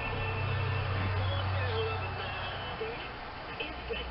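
Low steady background hum with an even hiss, and no clear handling or tool sounds.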